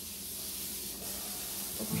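Steady faint hiss with a low hum underneath: room tone, with no distinct event. A voice starts just before the end.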